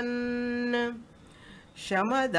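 A woman's voice chanting a Sanskrit verse holds one steady, level note for about a second at the end of a line. A short pause and an intake of breath follow before the chant resumes.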